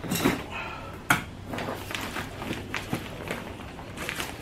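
Plastic soil bag being handled and rolled down, crinkling with a few sharp crackles and knocks. Near the end, loose potting soil falls from the bag into a plastic tub.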